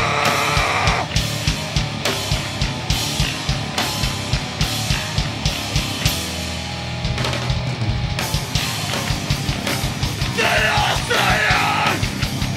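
Live hardcore punk band playing loud and fast: pounding drums with steady cymbal hits under distorted guitars and bass. Shouted vocals are heard in the first second and come back near the end.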